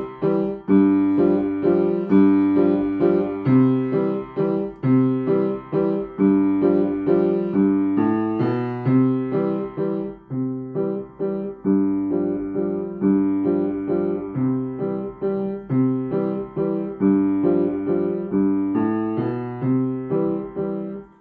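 Steinway acoustic piano playing a simple teacher's accompaniment part to a beginner piece: steady repeated chords in the middle and low range at an even, moderate pulse.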